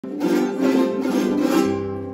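Several small acoustic guitar-like string instruments strummed together, playing loud sustained chords that fade out near the end.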